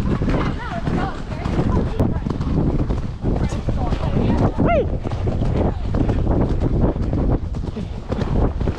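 Wind buffeting the microphone over the hoofbeats of a horse going at speed on a woodland track. A short falling call comes about halfway through.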